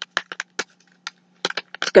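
Shiny powder-supplement sample packets crinkling as they are handled, a string of short, irregular crackles.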